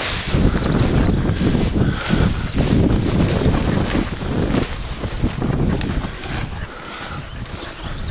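Wind buffeting the camera microphone: a loud, gusty rumble that eases off in the last couple of seconds.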